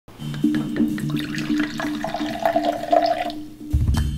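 Liquid poured from a bottle into a glass for about a second and a half in the middle, over background music with a repeating low pulse; a deep low thump comes near the end.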